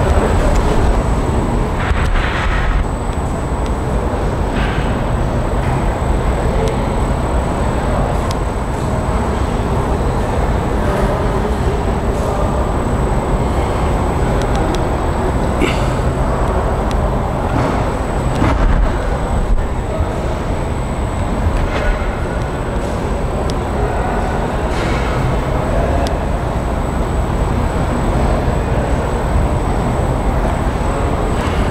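Steady, loud rumbling ambience of a busy cattle-show hall, with a few brief clicks and knocks.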